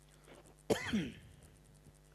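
A man clears his throat once, a short sudden sound about two-thirds of a second in that falls in pitch and dies away within about half a second.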